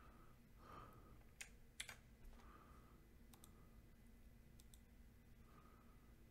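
A few faint, sharp clicks of computer keys and mouse buttons over near-silent room tone, two of them in quick succession about two seconds in.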